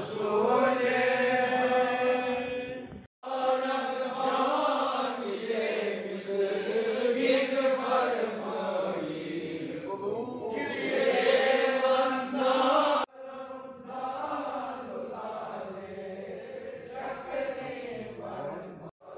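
Male voices in a slow, melodic Sufi devotional chant, with long held notes that glide up and down. The chant breaks off abruptly twice, about three seconds and thirteen seconds in.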